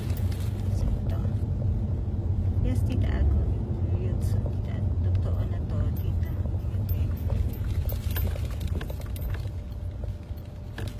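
Low, steady road and engine rumble inside the cabin of a moving car, easing a little near the end.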